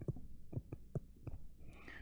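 Stylus tapping and scratching on a tablet screen during handwriting, a run of light ticks several a second, with a soft breath near the end.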